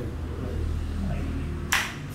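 One short, sharp snap or click near the end, over a low steady hum.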